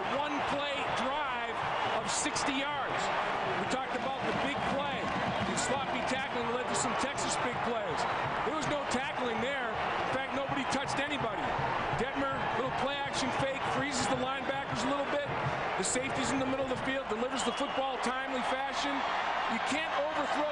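Large stadium crowd cheering and shouting for a home-team touchdown, many voices at once, with frequent sharp bangs standing out in the din.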